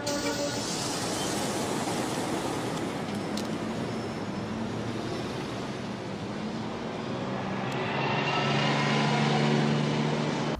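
City street traffic noise, a steady wash of passing cars, with a low steady hum that grows louder over the last two seconds.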